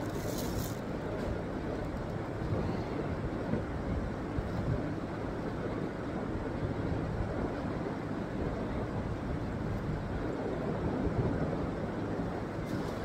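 Steady low rushing background noise, with a brief rustle of plastic about the first second.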